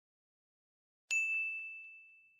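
A single bright bell ding, the sound effect of a subscribe-button animation, struck about a second in and ringing out with a fading high tone, with a couple of faint clicks just after.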